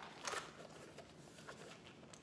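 Faint rustling and light clicks from handling a Monogram canvas Louis Vuitton Favorite bag and its metal chain strap as the flap is opened, with a small cluster of handling sounds about a quarter second in.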